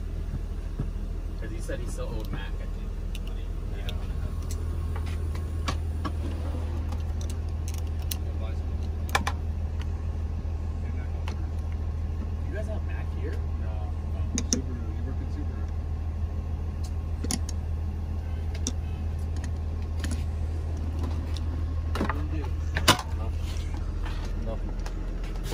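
A steady low mechanical hum, like a running vehicle engine, with a few scattered sharp metallic clinks of hand tools. The loudest clink comes near the end.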